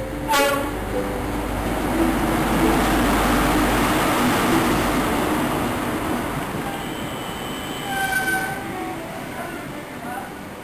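First Great Western InterCity 125 running into the platform. A short horn blast sounds just as the power car passes, then the diesel power car and the coaches' wheels rumble by, loudest in the middle and fading. A brief high squeal comes near the end.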